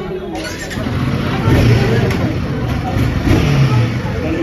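Royal Enfield Himalayan 450 motorcycle engine running, getting louder about a second in and swelling twice, with people talking over it.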